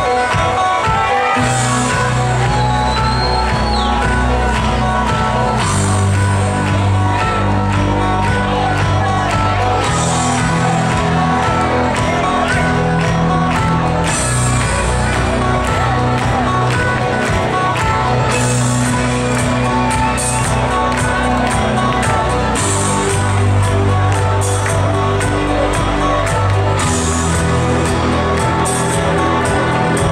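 Loud live band music in a large hall, with a sustained bass line changing note every few seconds, and crowd noise underneath.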